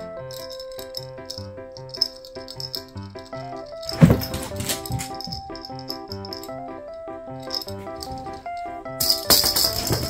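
Background music with a light, plucky melody. A small plastic rattle ball rattles loudly as it is tossed and rolls across a hard floor, first about four seconds in and again near the end.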